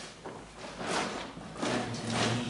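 A person breathing slowly and audibly close to the microphone: noisy rushes of air with short pauses between them, the easy breath in of a relaxed breathing exercise. A faint low hum comes in near the end.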